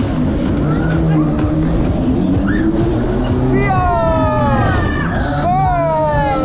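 Mondial Shake R5 fairground ride in motion, heard from on board: a steady rush of wind and rumble on the camera's microphone under loud ride music. From about three and a half seconds in, riders let out several long, falling whoops that overlap.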